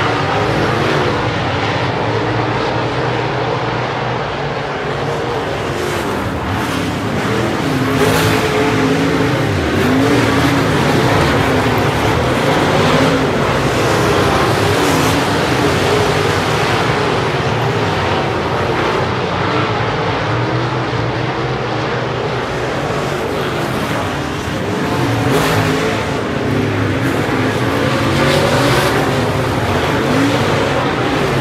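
A pack of dirt-track race cars racing, their V8 engines running hard in one continuous mix, with the pitch rising and falling as the cars come through the turns and past.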